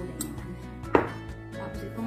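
A single sharp metal clank about a second in: metal kitchenware knocked against a stainless steel mixing bowl. Background music plays underneath.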